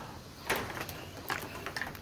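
A few faint, short clicks spaced out over a quiet background.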